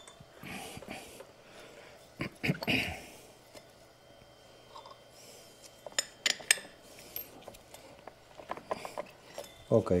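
Light metallic clinks and taps of hand tools and small metal parts being handled while the scooter's belt transmission is reassembled, coming in a few scattered clusters: around two seconds in, around six seconds in, and again near the end.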